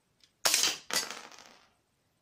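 A LEGO brick-shooting gun firing: a faint click, then two loud plastic clattering cracks about half a second apart, the second dying away within about a second.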